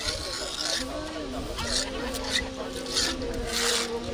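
Masons' hand trowels scraping and spreading wet mortar over a concrete grave slab, in several separate strokes, the longest near the end.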